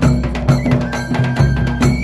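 Processional folk drumming: a barrel drum beaten with a stick in a quick, steady rhythm, with a metallic clanging beat and a high held melody note over it.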